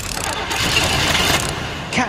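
Car engine running, swelling to its loudest in the middle and easing off toward the end.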